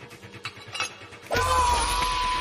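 Chains clinking and rattling against metal plate in short clicks, then about a second and a half in a sudden heavy hit with a deep boom and a ringing metallic tone that hangs on.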